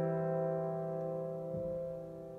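Piano chord held and slowly dying away, with a soft low thud about one and a half seconds in.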